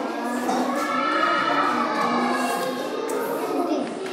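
A group of children's voices chanting in unison, drawing out long held notes.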